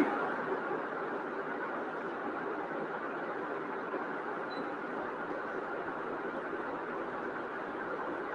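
Steady rushing background noise from an open microphone on an online call, with no speech.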